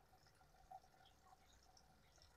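Near silence, with one faint brief sound less than a second in.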